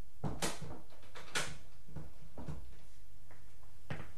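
Someone rummaging in search of a key: a series of irregular short rustles and knocks, the sharpest about half a second and about a second and a half in.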